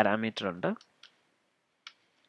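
A voice speaking briefly, then two single keystrokes on a computer keyboard, one about a second in and one near the end.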